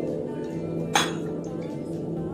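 A metal spoon clinks once against a small ceramic bowl about a second in, a sharp ring over steady background music.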